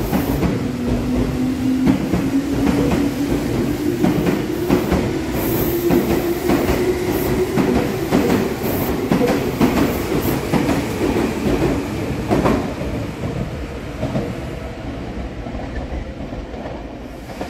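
Meitetsu 1200 series electric train pulling out of a station: wheels clatter over the rail joints while the motors whine, the whine rising in pitch for the first several seconds as it gathers speed. The sound fades toward the end as the train leaves.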